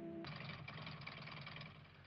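Car engine running: a steady low hum under a hiss, fading out near the end.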